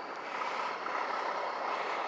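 Steady background road traffic noise, a continuous even hum of passing vehicles.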